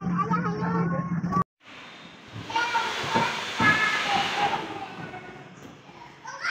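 Indistinct voices over a low steady hum, cut off suddenly about a second and a half in; then higher-pitched children's voices and play noises in a room, fading toward the end.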